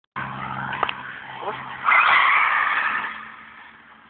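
Buggy running with a steady low hum, then a loud tyre skid about two seconds in that fades away over the next second or so.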